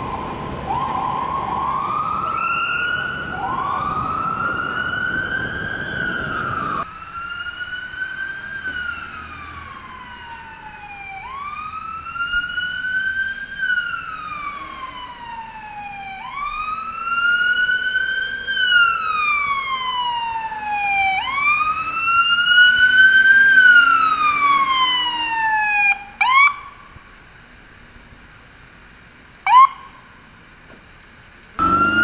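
Ambulance electronic sirens in city traffic. First the siren rises in quick repeated sweeps over street noise. Then a siren wails with slow rises and falls of about five seconds each, cuts out, and gives two short sharp chirps, the second very loud.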